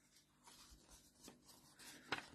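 Very faint rustling of paper as a picture book's page is handled, growing slightly near the end as the page begins to turn.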